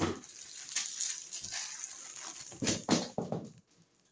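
Plastic packaging rustling and crinkling as items are handled and pulled out of a cardboard shipping box, with a few short louder rustles near the end before it goes quiet.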